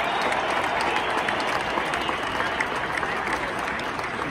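Large stadium crowd applauding: a dense wash of many hands clapping, easing off slightly toward the end.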